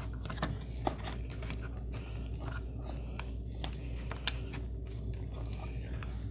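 Cat5 data cable scraping and clicking against the plastic electrical box and the drywall edge as it is pulled through by hand, in short irregular rubs and ticks. A steady low hum runs underneath.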